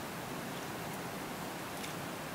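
Faint, steady hiss of river water and outdoor background, with no distinct events.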